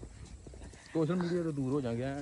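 A man's voice: one drawn-out vocal sound with a slowly falling pitch, starting about halfway in after a quieter moment.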